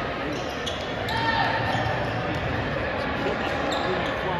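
Basketball dribbling on a hardwood gym floor against a steady background of crowd chatter.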